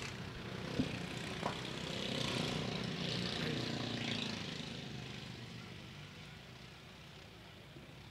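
Mini-modified dirt-track race cars running laps, their engines rising to their loudest a couple of seconds in, then fading steadily as the cars move away around the track.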